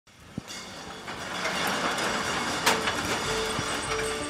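Chain-hoist roll-up door being hauled open: a rattling rumble that builds up from silence, with a sharp clank about two and a half seconds in.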